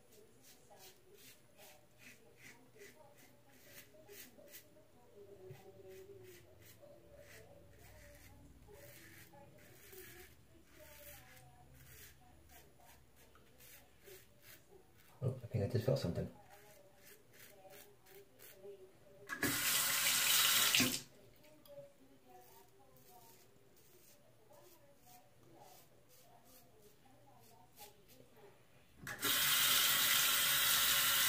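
Double-edge safety razor (Persona Lab Blue blade, seventh use) scraping through lather and stubble on a first pass with the grain: a run of short, quiet strokes through the first half. A brief low noise comes about fifteen seconds in. A bathroom faucet then runs twice to rinse the razor: for about a second and a half some twenty seconds in, and again from about a second before the end.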